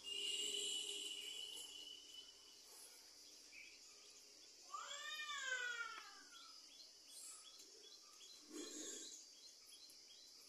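An animal's single drawn-out call about halfway through, rising and then falling in pitch. A short burst of noise comes at the very start.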